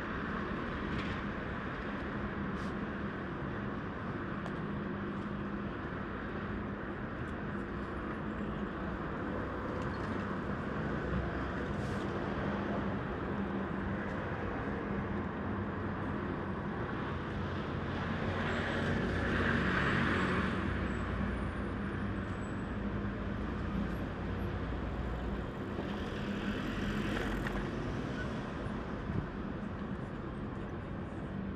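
City road traffic going by in a steady wash, with one vehicle passing louder about two-thirds of the way through and a smaller swell near the end.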